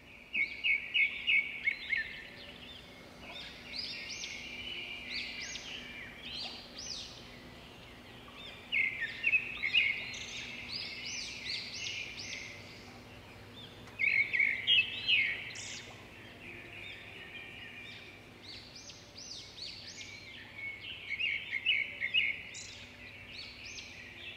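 Forest ambience of songbirds chirping: recurring bursts of rapid, high-pitched trilled notes every few seconds over a faint steady background.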